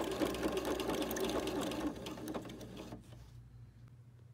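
Domestic sewing machine running fast, stitching an overcast zigzag along a fabric edge with an overcasting foot, then slowing and stopping about two to three seconds in.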